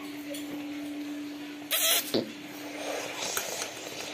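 A person eating from a metal bowl with a steel spoon: quiet mouth and spoon sounds, with one short, loud, noisy sound about two seconds in and a click right after. A steady low hum runs underneath.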